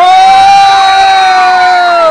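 A spectator close to the microphone gives one loud, long held shout of celebration at a goal, with a crowd cheering behind.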